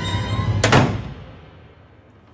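A held, eerie film-score chord broken by one loud, sudden bang about two-thirds of a second in, after which the sound dies away.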